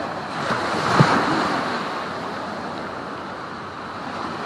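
Small waves washing up the sand at the water's edge, with wind on the microphone. The surf swells to its loudest about a second in, with a short thump at that peak, then eases off.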